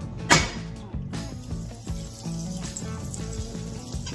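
Butter sizzling as it melts in hot oil in a frying pan, under steady background music, with one sharp clack about a third of a second in.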